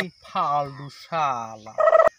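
A man's voice in three short vocal phrases, each falling in pitch, the last one louder and brief.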